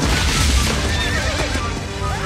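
A sudden explosion with a deep rumble, then a horse whinnying, over the film's music.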